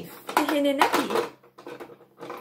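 A woman's voice saying a single word, followed by light clicks and knocks of a plastic toy school bus and figure being handled on a table.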